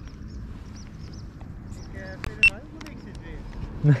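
Light rain falling: scattered drop ticks over a low, steady wind rumble on the microphone, with one sharp click about two and a half seconds in.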